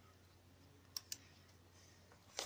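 Near silence broken by two short clicks about a fifth of a second apart, a second in, from a computer mouse.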